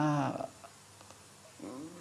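A woman's voice trailing off at the end of a word, then about a second of pause with faint room tone, and a faint voiced sound near the end as she starts speaking again.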